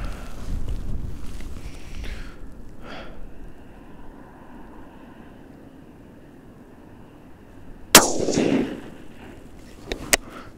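A single shot from a suppressed .243 rifle about eight seconds in: a sharp report followed by about a second of decaying tail. Before it, some rustling in the first two seconds, then a quiet stretch.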